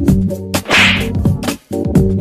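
Background music with a steady beat, and a short hissing swoosh just under a second in.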